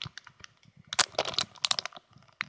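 Clear plastic packaging crinkling and crackling as a boxed soft silicone mold is handled, a quick run of sharp crackles and clicks that is thickest from about a second in.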